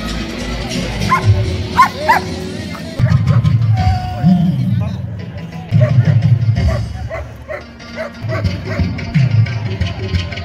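A dog barking a few short times about one and two seconds in, over background music with a steady, rhythmic bass line.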